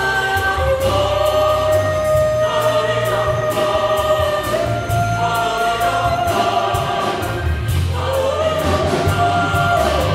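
A choir and orchestra performing, the choir holding long sustained notes that step to a new pitch every second or two over a deep, steady bass, with sharp percussive hits scattered through.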